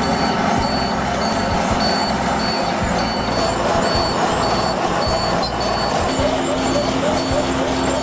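Asphalt paving machinery, a tracked paver and a road roller, running steadily on site, with a high beep repeating about twice a second.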